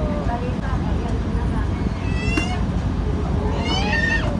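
Steady low rumble of a moving barge, its engine and wind on the microphone, with two brief high-pitched cries about two seconds in and near the end, the second rising then falling.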